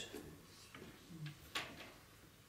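A pause in a quiet room with a few faint sharp clicks, most about a second and a half in, and a brief low murmur just past a second.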